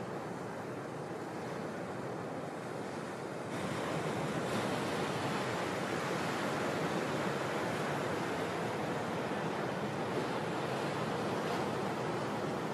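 Ocean surf: a steady rush of breaking waves and whitewater, getting louder about three and a half seconds in.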